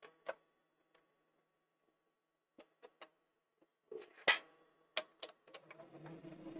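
Sparse light clicks and knocks from a workpiece being handled in a metal four-jaw lathe chuck, with the lathe stopped; one louder knock comes a little past the middle.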